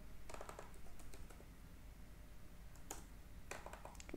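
Faint typing on a computer keyboard. A quick run of key clicks comes in the first second, then a few single keystrokes near the end.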